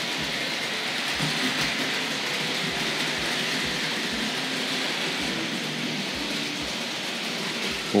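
Vintage three-rail 00-gauge model trains running on the layout: a steady whirring hiss of motors and wheels on track, with irregular soft knocks. Running smoothly, "fairly well behaved".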